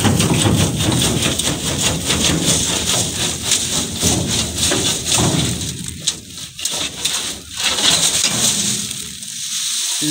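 Dry wheat straw and chaff rustling and crackling, with metal scraping, as a perforated steel sieve screen is slid out of a wheat thresher. The dense crackle thins out with short breaks from about halfway through.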